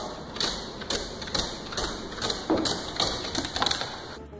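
A dog coming down wooden stairs one step at a time, its paws and body knocking on the wooden treads in an uneven run of thuds, about two or three a second.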